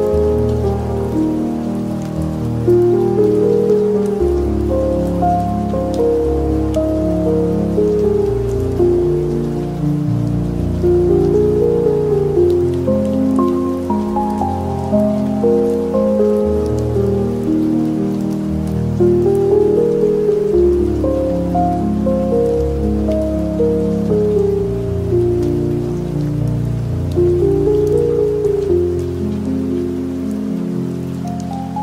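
Slow ambient piano music over low held bass notes, a short rising-and-falling phrase recurring about every four seconds, mixed with the steady sound of falling rain.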